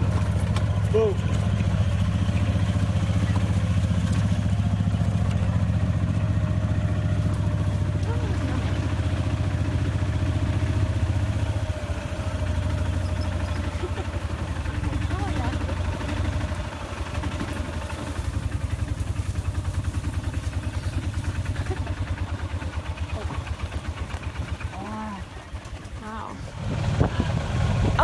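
Open-sided cart driving along a rough dirt track: a steady motor drone with a rumble and rattle from the bumps, easing somewhat about halfway through.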